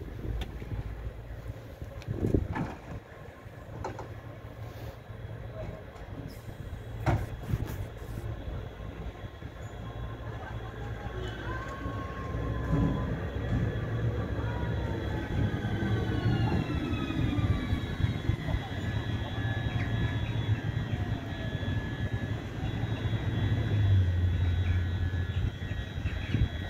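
Electric locomotive E68066 moving slowly on shunting duty, growing louder as it approaches. A low hum sits under high whining tones that glide down and up from about halfway through. A few sharp knocks come in the first eight seconds.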